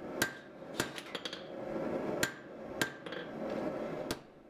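Hand hammer striking red-hot steel on an anvil: about six ringing blows at uneven intervals, forge-welding the V at the tip of a knife billet closed, over a steady background rush.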